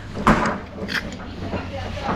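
Wet slurping as a person sucks juice and pulp from a squished ripe mango through a hole in its skin: two short slurps, the first just after the start and the second about a second in.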